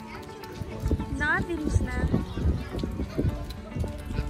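Voices of people talking, with music playing underneath and a short rising voice-like call about a second in.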